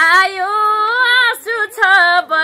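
A woman's solo voice singing a Nepali dohori folk melody in long, held, gliding notes, breaking briefly about one and a half seconds in.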